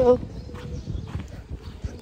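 Footsteps of a person walking, with an uneven low rumble of wind and handling on a handheld phone's microphone.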